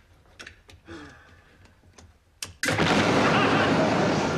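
Electric kettle blowing up: a few light clicks and knocks, then, about two and a half seconds in, a sudden loud blast that carries on as a long hiss, slowly fading.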